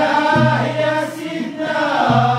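A group of men singing a Moroccan malhoun song in unison, carried by a steady low instrumental drone under the voices.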